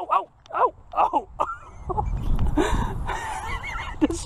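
A man laughing in a few short bursts, then a stretch of rushing noise with faint voice in it.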